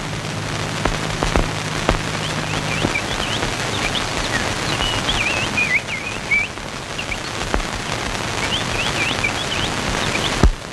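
Birds chirping in short quick trills over a steady hiss with occasional clicks from an old film soundtrack. A low hum cuts off about three seconds in.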